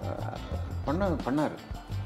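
A man's voice in a short utterance over background music with a steady low bass.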